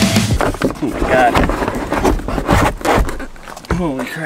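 Rock music cuts off just after the start. Then come irregular knocks, scrapes and squeaks as the plastic CVT clutch cover of a Can-Am Outlander 650 is worked loose and pulled off the belt housing.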